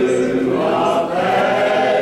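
A small group of mostly male voices singing a hymn together from hymnals, holding long notes and moving to a new note about a second in.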